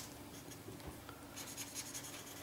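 Felt-tip marker stroked back and forth on paper while shading: faint, quick scratchy strokes, coming thicker near the end.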